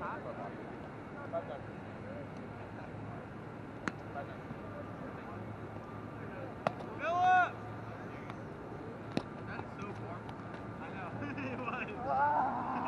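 Open-air ambience with wind on the microphone, a few sharp taps, and one loud rising-then-falling vocal call, like a shout, about seven seconds in.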